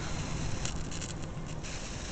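High-voltage plasma discharge from a Brovin kacher (slayer exciter) Tesla coil, hissing and crackling steadily, with a few sharper crackles in the second half. A faint steady high-pitched whine runs underneath.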